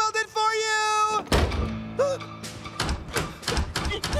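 A drawn-out cartoon voice, then a door shutting with a single heavy thunk about a second in. Music with a quick beat follows.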